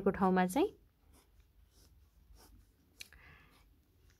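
A pen scratching faintly on notebook paper as circuit lines are drawn, in a few short strokes, with a sharp tick about three seconds in followed by a longer stroke.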